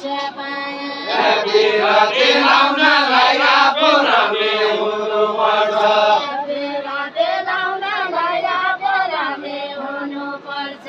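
A group of voices singing a deuda song together in a chant-like way, the group's singing growing louder about a second in.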